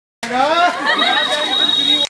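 People talking, cutting in abruptly just after the start, with a steady high tone joining about halfway through.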